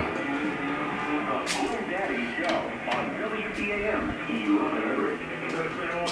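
A radio playing in the background, a voice over music, with a few sharp clicks about one and a half to three and a half seconds in.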